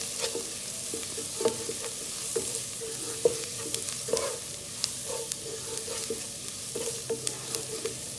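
Chopped onions and ground spices sizzling in a nonstick pan while a wooden spatula stirs them, with a steady hiss and frequent irregular knocks and scrapes of the spatula against the pan.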